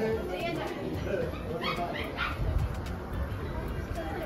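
A small dog yipping in short, high calls, the clearest three in quick succession about halfway through, over the chatter of a crowd.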